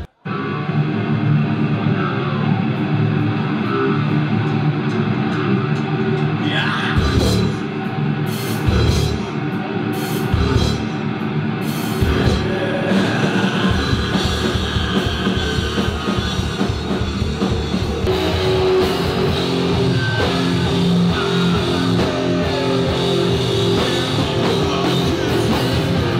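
Heavy metal music with distorted electric guitars, bass and a drum kit, coming in abruptly after a split-second break. Between about 7 and 13 seconds the deep bass and kick come in as separate hits, then they run steadily.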